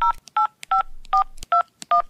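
Touch-tone telephone keypad being dialled: about six short beeps, each two tones sounding together, roughly two and a half a second.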